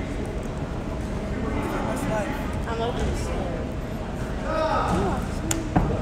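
Faint background voices in a large gym, then a single sharp thud near the end as a cheerleader lands a standing back tuck on the mat floor.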